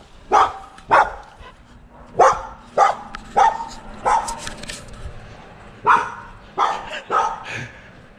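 A yard dog barking at a passer-by, about nine sharp barks at uneven intervals with a pause of nearly two seconds in the middle. It is territorial barking: the dog thinks it is driving the person away.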